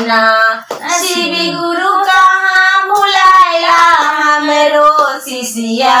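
Two women singing a Shiv guru bhajan, a Magahi devotional song, without instruments. Long held, wavering notes, with a few hand claps along the way.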